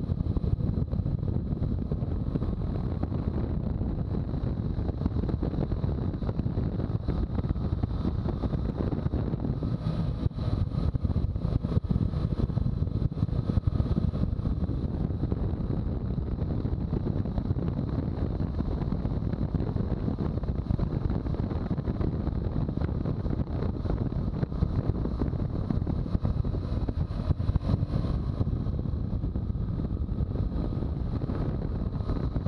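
Steady wind rush buffeting a motorcycle-mounted camera's microphone at road speed, with tyre and engine noise from a BMW R1200GS boxer twin underneath. The buffeting roughens in places.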